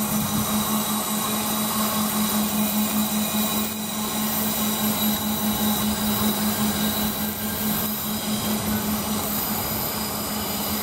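Double-deck passenger train rolling along curving station tracks: a steady low hum over wheel and rail noise, with thin high tones above.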